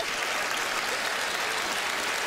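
Studio audience applauding and laughing.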